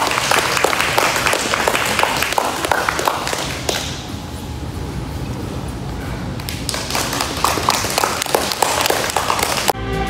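Small crowd clapping, dying down for a few seconds in the middle and picking up again. Music starts suddenly just before the end.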